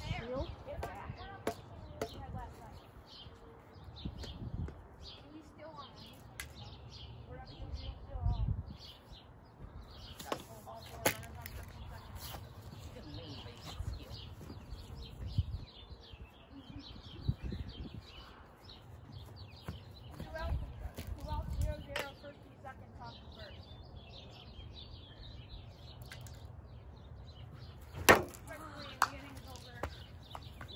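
Outdoor ambience of a backyard wiffle ball game: wind rumbling on the microphone in gusts, birds chirping, and kids' voices in the distance. A few sharp knocks break through, the loudest about two seconds before the end.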